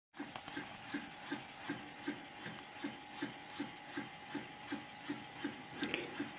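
Magnetic ball circulating inside a vertical ring of clear plastic hose, driven by an electromagnetic coil at the bottom of the ring: faint, even ticks about three times a second over a faint steady tone.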